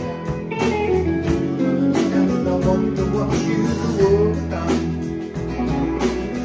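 Live rock band playing an instrumental passage: two electric guitars, bass guitar and a drum kit keeping a steady beat.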